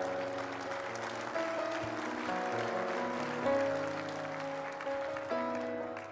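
Congregation applauding, with soft keyboard chords held underneath.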